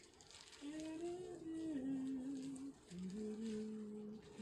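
A person humming a slow tune: held notes stepping down in pitch, a short break near three seconds in, then a lower held note.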